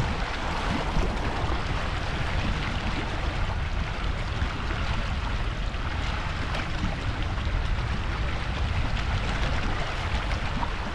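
Steady rush of a wide, fast-flowing silty river running past a rocky bank, with wind rumbling on the microphone.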